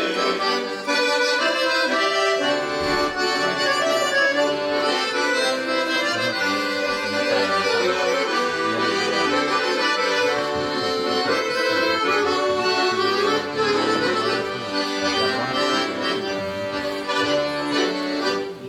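Two accordions, a piano accordion among them, playing a steady instrumental passage of traditional-style tune without singing.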